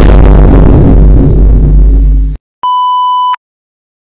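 A loud, distorted blast of noise at full level for about two seconds, cut off abruptly. After a brief gap comes a steady, high, censor-style bleep lasting under a second.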